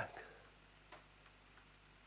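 Near silence: room tone in a pause between speech, with one faint click about a second in.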